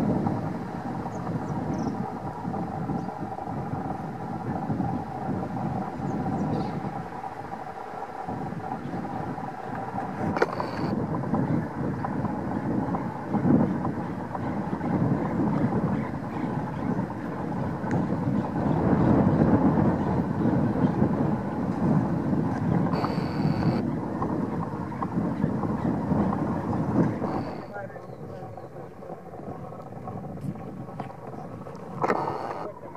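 Strong wind buffeting the microphone: a dense, steady rush of wind noise that swells with the gusts and drops off near the end.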